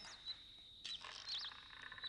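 Faint bird-like chirps, a few short warbling whistles, over a steady high-pitched whine, with a soft knock a little before a second in.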